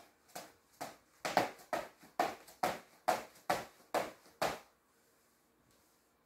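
A person doing quick exercises on the spot, making about ten regular short beats, a little over two a second, which stop about four and a half seconds in.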